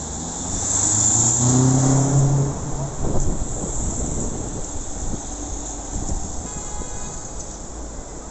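City street traffic: a motor vehicle's engine passes close by, loudest about one to two and a half seconds in, over steady road noise. There is a single sharp knock about three seconds in.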